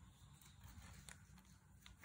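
Near silence, with a few faint soft clicks from fingers handling painter's tape on watercolour paper.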